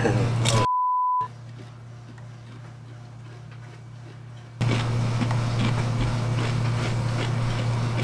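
A short, steady high-pitched censor bleep lasting about half a second, about a second in, with all other sound muted under it. After it comes quiet room tone, and about four and a half seconds in a steady low hum and room noise return, louder.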